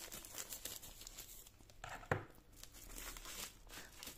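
Scissors cutting through a thin plastic mailer bag, the plastic crinkling as it is handled and opened, with a sharper click about two seconds in.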